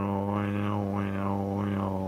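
A man humming one low, steady droning note, his mouth reshaping the vowel so the tone swells and fades in a wah-wah about twice a second, a mock mystical chant.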